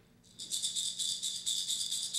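A hand rattle shaken in a quick, even rhythm, starting about half a second in.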